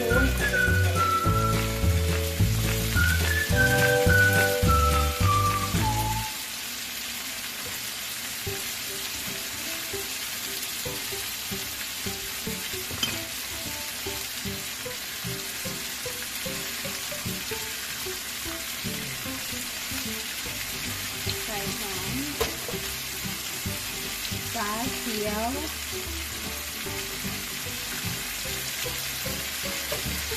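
Background music for the first few seconds. After it comes a steady hiss with small clicks and rustles as seasoning and sauce go onto raw pork hocks in a skillet.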